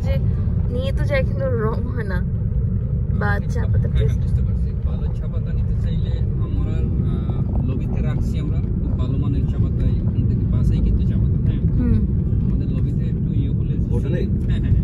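Steady low rumble of a moving car's engine and tyres on the road, heard from inside the cabin.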